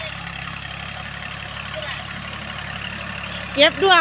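Diesel engine of an L36 tractor running steadily under load as it pulls a three-disc plough through sugarcane stubble. A woman's voice starts near the end.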